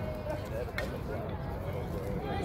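Distant, indistinct voices of softball players talking and calling across the field, over a steady low rumble. A single short sharp tap comes a little under a second in.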